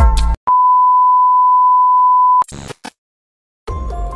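A single steady electronic beep, one pure unwavering tone held for about two seconds, comes in just after music cuts off. Two short crackly bursts follow, then a moment of silence, and music starts again shortly before the end.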